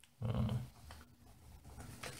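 A man's short hesitant "uh", followed by quiet room tone.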